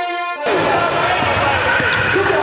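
Brass music that cuts off abruptly about half a second in, giving way to the sound of a basketball game in a gym: a ball bouncing on the hardwood and many voices echoing in the hall.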